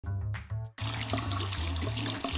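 A short musical intro that cuts off abruptly, then a kitchen faucet running steadily as raw meat is rinsed under it, over a low music bed.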